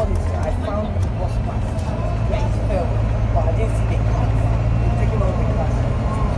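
Volvo B9TL double-decker bus's six-cylinder diesel engine and drivetrain heard from inside the upper deck while the bus is under way, a steady low drone.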